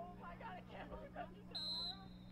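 Field hockey umpire's whistle: one short, steady blast near the end, for a restart with the ball set for a free hit. Before it, faint voices of players calling on the field.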